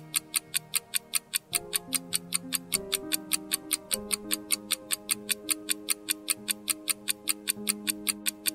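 Quiz countdown timer sound effect: fast, even clock ticking, about four ticks a second, marking the seconds left to answer. It plays over soft background music whose sustained chords change every second or so.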